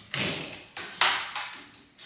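Handheld shower wand and its metal hose being handled, clattering in three short bursts that each fade quickly.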